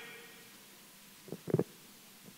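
A pause in a man's talk into a handheld microphone: his last word dies away, then a couple of short low sounds come from him about one and a half seconds in.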